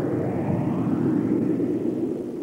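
A rushing, roaring noise with no tune, swelling and then fading near the end.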